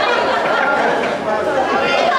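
Many people talking at once in a large hall: steady crowd chatter with no music playing.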